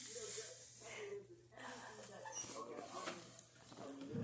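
Faint speech in the background.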